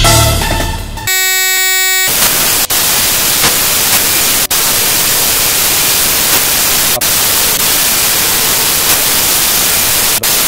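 A second of buzzing electronic tone, then loud, steady static hiss like white noise, broken by a few brief dropouts.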